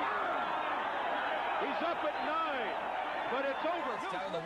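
Indistinct men's voices talking, low and unclear, over a steady background hiss.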